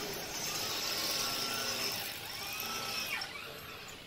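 Power tool at a building front running twice, its whine rising and then falling in pitch each time, over a steady street hiss that fades near the end.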